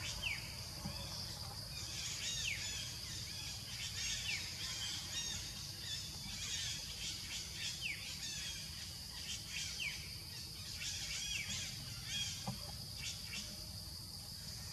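Forest ambience: birds chirping repeatedly in short falling notes every second or two over a steady high insect drone, with a low rumble underneath.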